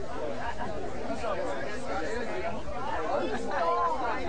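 Indistinct talking and chatter from voices, with no singing or music.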